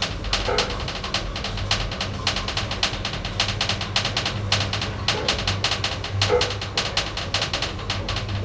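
A KONE-modernised 1984 Otis passenger elevator travelling upward between floors: a steady low hum from the drive under rapid, continuous clicking and ticking.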